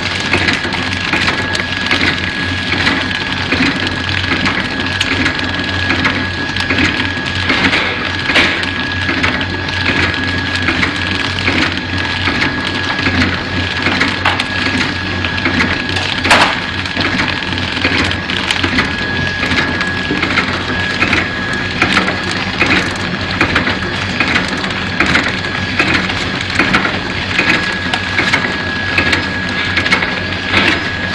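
KT-350D bread flow-pack wrapping machine running: a fast, even clatter from its cycling mechanism over a steady hum, with a thin, steady high whine. One sharper click stands out midway.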